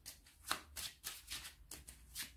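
A tarot deck being shuffled by hand: a soft, even run of card-shuffling strokes, about four to five a second.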